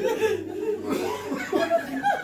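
Several people chuckling and laughing, with bits of speech mixed in.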